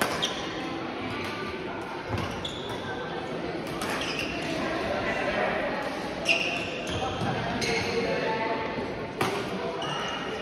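Badminton racket strikes on the shuttlecock during a rally, a handful of sharp hits a few seconds apart in a large, echoing sports hall, with voices in the background.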